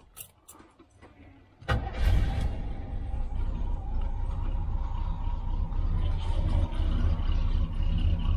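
Carbureted 454 big-block Chevy V8 of a 1983 motorhome starting: a few faint clicks, then the engine catches suddenly a little under two seconds in, flares briefly and settles into a steady idle.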